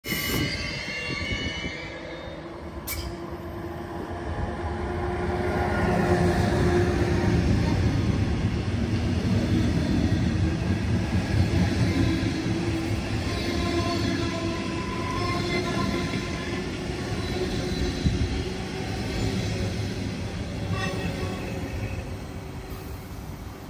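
A metronom double-deck regional train passing close on the near track. Its wheels rumble on the rails, loudest through the middle and easing as the train moves away, with steady squealing tones over the rumble. There is a single sharp click about three seconds in.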